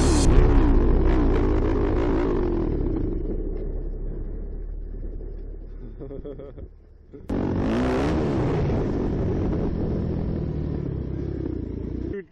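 Yamaha WR250F dirt bike's four-stroke single-cylinder engine running under the rider, its revs rising and falling. It fades away over about six seconds, drops out briefly, then comes back suddenly a little after seven seconds.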